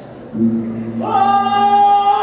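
Singers holding long notes: a low voice comes in about a third of a second in, and a higher voice joins it about a second in, the two sustained together.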